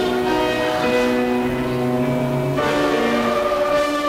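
Organ music: sustained, steady chords held and changing every second or so.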